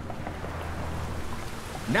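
Rain sound effect: a steady hiss of falling rain, with a low hum underneath that stops about three-quarters of the way through.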